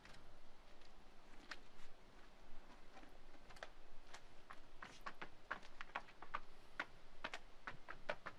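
Faint, irregular clicks and taps from work on fresh stamped concrete, as rubber texture stamp mats are handled and laid on the slab.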